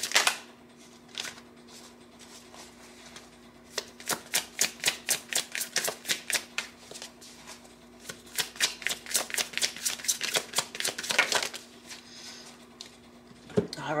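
A tarot deck being shuffled by hand: two runs of quick card flicks, about five a second, starting about four seconds in with a short break in the middle.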